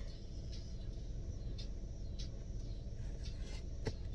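Steady low hum inside a car cabin, with a few faint ticks and one sharper click near the end.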